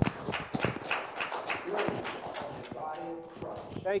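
A small congregation clapping: scattered, uneven hand claps, with a voice or two among them.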